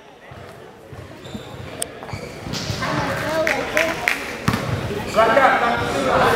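A basketball bouncing on an indoor gym floor during play, with a few scattered thuds. Background voices in the echoing hall grow louder toward the end.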